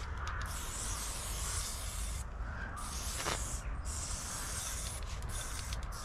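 Aerosol spray paint can spraying in long bursts with short breaks between.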